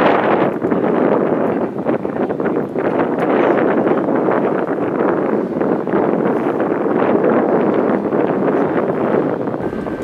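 Wind buffeting the camera microphone: a loud, steady rushing noise that starts abruptly and eases slightly just before the end.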